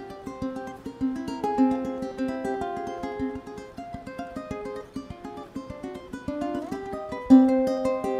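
Solo ukulele played fingerstyle: a melody over chords in quick, closely spaced plucked notes, with a louder accented note about seven seconds in.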